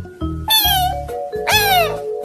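Two cat meows, about a second apart, each falling in pitch, over a music track with a steady bass beat.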